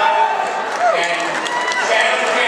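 A man speaking through a public-address system at a podium microphone, with other voices behind.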